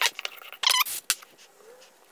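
A few short squeaks and light clicks as CA super glue is squeezed from its bottle and a red oak block is set down and pressed onto plywood, the loudest a brief squeaky sputter about two-thirds of a second in.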